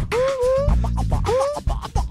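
Live hip-hop band playing an instrumental groove: drums and a heavy bass line, with a lead sound that swoops up in pitch again and again, like a record scratch, about three times in two seconds.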